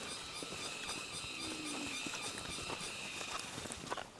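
Soft, irregular footsteps of several people walking in sandals on a dirt path through grass, over a steady high-pitched background buzz, with a sharper click near the end.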